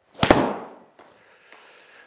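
Golf wedge striking a ball off a hitting mat: one sharp crack about a quarter second in, fading over about half a second. The wedge's grooves are badly worn.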